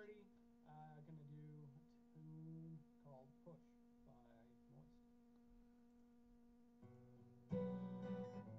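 Near silence with a faint steady hum; about seven and a half seconds in, an acoustic guitar starts strumming.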